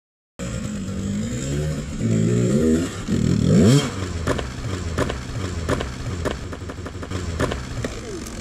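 Off-road dirt bike engine revving up and down as it climbs over a rocky, rooty woods trail, with a sharp rise in revs a few seconds in. Knocks from the bike striking rocks and roots are scattered through the second half.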